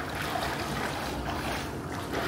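Steady rush of water and wind noise as a swimmer strokes through a pool, with wind on the microphone.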